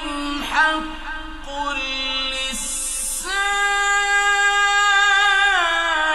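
A man's solo voice in melodic, unaccompanied Quran recitation, ornamenting the line and then holding one long note through the second half that drops in pitch near the end.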